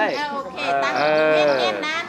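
A person's voice drawing out one long vowel for about a second, between bits of talk.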